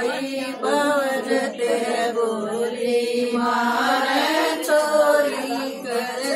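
Women's voices singing a Haryanvi folk song (lokgeet), the melody carried in long held notes.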